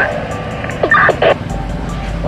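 Short, garbled voice bursts from a handheld two-way radio about a second in, a reply coming over the walkie-talkie, heard over a steady low rumble.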